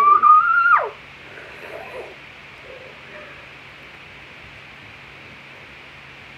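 A girl's voice giving a long, rising "woo" into the mouth of a water bottle. Less than a second in, it breaks off with a sharp downward slide.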